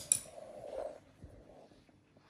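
Two quick, light clicks of a thin metal skewer being set down on a stone countertop, followed by faint handling noise as a coriander sprig is picked up.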